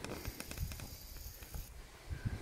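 Quiet outdoor ambience: a low, uneven rumble with a faint hiss that stops near the end.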